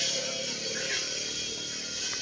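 A small engine running steadily in the distance, a constant hum with a high hiss over it.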